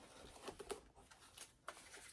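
Near silence: room tone with a few faint, short handling ticks.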